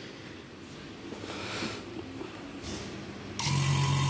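Electric refrigerant vacuum pump switched on about three and a half seconds in, starting at once into a steady running hum with a hiss. It is beginning to pull a vacuum on a car's air-conditioning system after a leaking low-pressure pipe was welded. Before it starts there is only faint handling noise.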